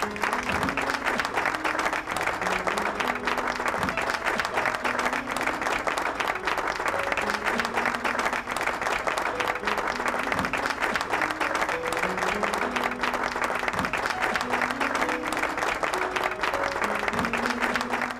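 An audience applauding steadily, a dense patter of many hands clapping, with a melody playing underneath.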